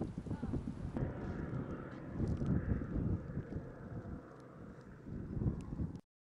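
Faint outdoor ambience: wind noise on the microphone and a distant engine that swells and fades, with faint voices in the first second.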